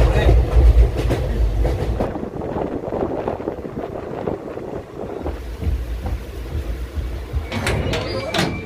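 Uttar Banga Express sleeper coach in motion: rumble and clatter of the wheels on the track, heaviest in the first two seconds and lighter after. Near the end, a few sharp metallic clicks as the coach door's latch is worked.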